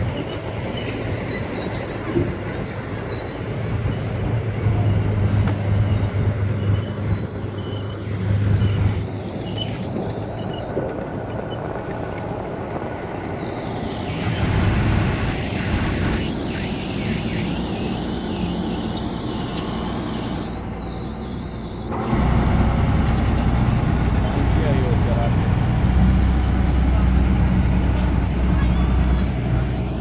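Wheeled armoured vehicle's engine running steadily, growing louder and heavier about two-thirds of the way through as the vehicle drives off, with voices in the background.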